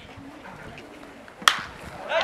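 A single sharp pop about one and a half seconds in: a pitched baseball smacking into the catcher's mitt.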